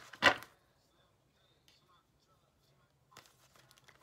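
Tarot deck being shuffled by hand: a sharp snap of cards just after the start, a near-silent pause, then quick riffling and clicking of cards in the last second.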